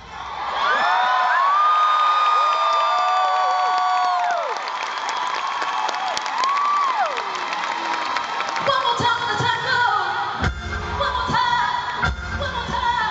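Live concert break: the band drops out, a long high held note slides down as it ends, and the crowd cheers and whoops. The full band with drums comes back in near the end.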